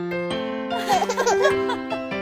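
Instrumental children's song music with a baby giggling over it for about a second, midway through.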